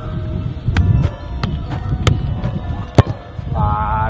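A soccer ball kicked off artificial turf: a few sharp knocks over a low rumble, the loudest about three seconds in, with faint background music.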